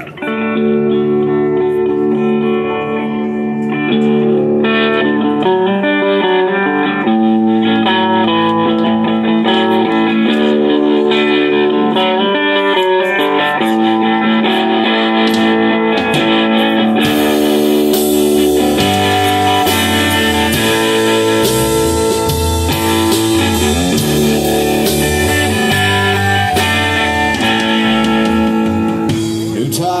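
Live band playing a country-rock instrumental intro on electric guitars. The drums come in about halfway through, followed shortly by a bass line, filling out the sound.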